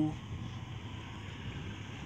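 Ford Explorer engine idling smoothly, a steady low rumble.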